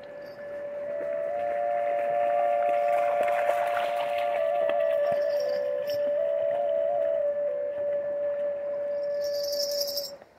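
Dvoyanka, a Bulgarian double flute, playing a steady drone note on one pipe while the other pipe moves in a short stepping melody just above it. The sound swells in over the first second and stops abruptly at the end.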